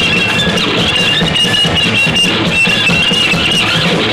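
A live noise-punk band playing loud: distorted electric guitar and bass guitar, with a shrill high note held again and again above them.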